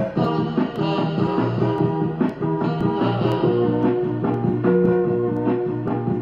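Guitar music with a steady rhythm of picked notes and held chords, played as an instrumental passage of a song.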